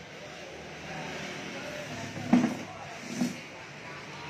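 Scooter engine running steadily at idle, with two brief louder sounds about two and three seconds in.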